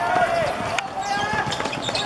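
Players' voices calling out across the pitch, with a few sharp thuds of a football being kicked and played along the ground.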